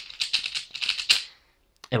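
Rapid clicking and clacking of a 3x3 speedcube's layers being turned in a fast run of finger-trick moves, stopping about a second and a half in as the cube comes solved.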